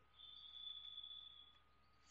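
Near silence: room tone, with a faint, thin high-pitched whine that starts just after the beginning and stops about a second and a half in.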